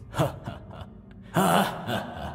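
A person's short breathy vocal sounds: a brief falling 'hah' near the start, then a louder breathy gasp-like burst about a second and a half in that fades away in echo.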